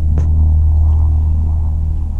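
Steady, loud low rumble inside a car's cabin, with the car in neutral; one short click a fraction of a second in.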